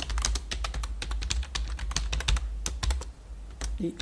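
Computer keyboard being typed on: a quick, uneven run of key clicks as a sentence is entered, over a steady low hum.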